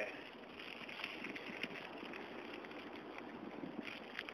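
Faint, steady noise of a bicycle rolling along a town road, with light wind on the microphone.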